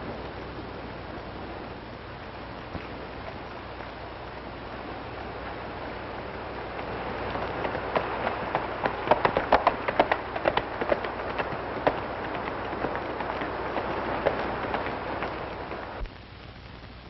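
Hoofbeats at a run over the steady hiss of an old film soundtrack. They grow louder from about halfway in into a dense, irregular clatter for a few seconds, then ease and stop abruptly at the end.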